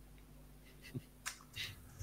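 Low room tone over a call with a few faint, short clicks from about a second in.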